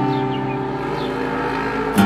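Cutaway acoustic guitar chord left ringing and slowly fading, with a low rumble underneath; a new strum comes in right at the end.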